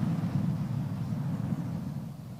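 A long breath blown across a handheld microphone: a loud, low rumble of air buffeting the mic that slowly tails off.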